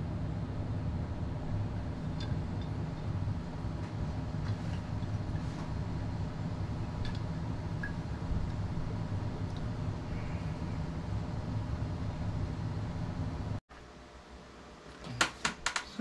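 Motorised display turntable running, a steady electric motor hum that stops abruptly near the end, followed by quieter room sound and a few quick clicks.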